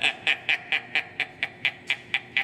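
A man laughing in a rapid run of short, breathy laugh bursts, about four a second, slowly fading.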